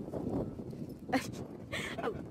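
Footsteps on asphalt with wind rumbling on a handheld microphone while walking. There is one short sharp call about a second in and a brief hissing burst near the end.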